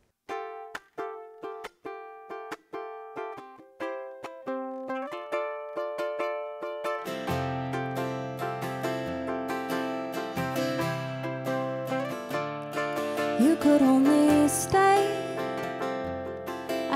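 Ukulele opening a slow song with separate plucked notes and chords, spaced out. About seven seconds in, an acoustic guitar joins and fills out the low end.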